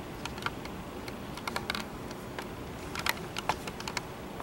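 Irregular light clicks of laptop keys being pressed, a few at a time with short gaps between.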